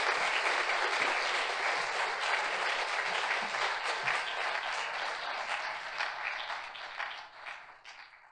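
Audience applauding: dense clapping that gradually thins and fades away near the end.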